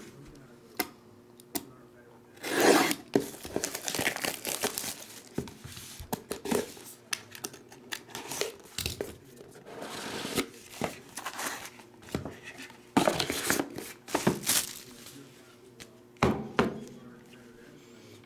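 Plastic shrink wrap being torn and crinkled off sealed trading-card boxes, in irregular bursts of crackling, with a few sharp clicks from handling.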